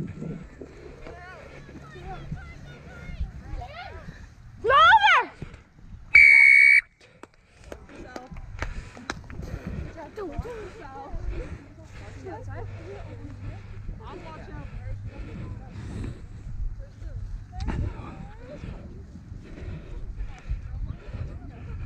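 Referee's whistle blown in one steady, shrill blast of just under a second, about six seconds in. Just before it comes a loud shout that rises and falls in pitch, and scattered voices of players and onlookers run underneath.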